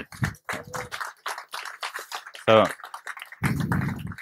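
Laptop keyboard being typed on: a quick, irregular run of key clicks, heard through the lectern microphone.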